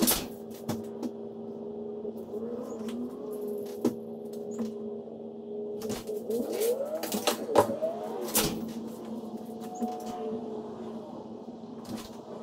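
Sharp clanks and knocks of a black wire steel shelving unit being handled and fitted with shelves, loudest at the very start and twice about eight seconds in, over a steady low hum.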